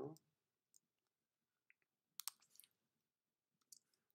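Faint, scattered computer keyboard clicks in near silence, with a short cluster of them a little over two seconds in.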